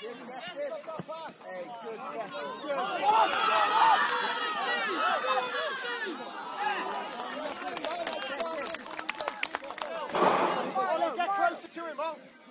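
Players and touchline spectators shouting across a grass football pitch during play, several voices overlapping and loudest a few seconds in, with sharp clicks and a brief louder swell near the end.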